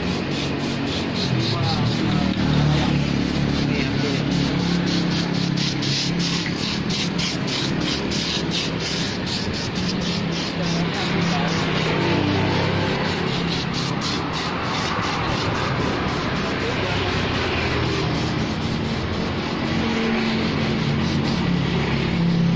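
Road traffic going past, with music playing and a regular ticking beat for the first half.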